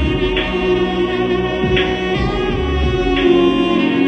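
Two saxophones playing a sustained melody together, with accompaniment underneath and a short bright hit recurring about every second and a half.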